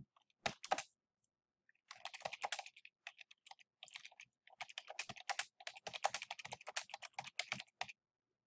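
Typing on a computer keyboard: two quick keystrokes about half a second in, a pause, then a fast, steady run of key clicks from about two seconds in.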